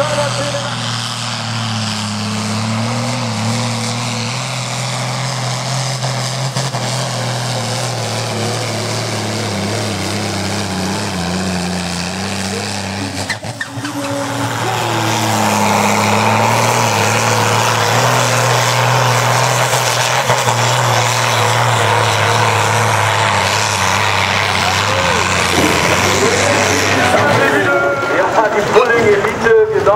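Farm-class pulling tractor's diesel engine running hard under full load while dragging a weight-transfer sled, holding a steady pitch that wavers slightly. It dips briefly about halfway through, then comes back louder.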